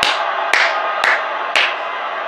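A man clapping his hands in reaction, four sharp claps about half a second apart.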